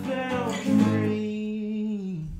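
Acoustic guitar and a man's voice closing a song: a sung note trails off in the first half second, then a last strummed chord about a second in rings on steadily and dies away near the end.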